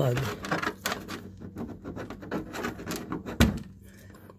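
A TV's power cord being pulled out of the socket on the back of the set: small plastic clicks and rustles of handling, with one sharp knock about three and a half seconds in.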